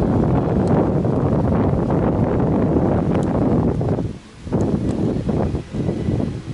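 Wind buffeting the camera's microphone, a loud, uneven low rumble that dips briefly a little after four seconds.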